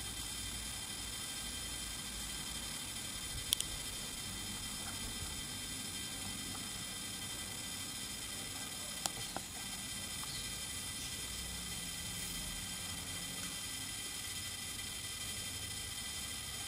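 Steady background hiss with a faint high whine, broken by two brief sharp clicks, one about three and a half seconds in and one about nine seconds in.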